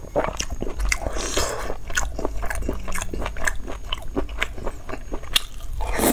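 Close-miked chewing of braised beef with tendon and fat: a quick run of short wet clicks and smacks from the mouth, with a longer noisy stretch about a second in.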